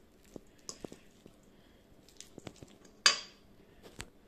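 A metal fork clinking and scraping against a stainless steel bowl while mixing ground chicken, in light scattered ticks, with one louder ringing clink about three seconds in.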